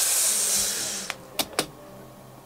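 A rustling sound for about a second, then three quick crackles.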